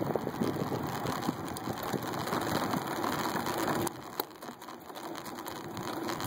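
Riding noise from a moving road bicycle, picked up by a phone mic clamped to the handlebars: a steady rush of tyres on asphalt and air over the mic, broken by many small clicks and knocks. It drops noticeably quieter about four seconds in.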